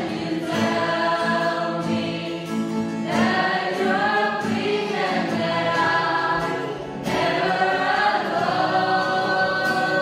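Mixed group of young male and female voices singing a gospel song together as a choir, accompanied by a strummed acoustic guitar.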